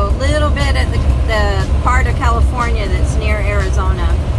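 A person talking over the steady low rumble of a vehicle driving at highway speed, heard from inside the cab.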